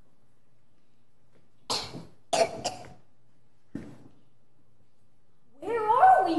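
People in the audience coughing in the dark hall: one cough about two seconds in, a quick run of three just after, and a single one near four seconds. A voice starts up near the end.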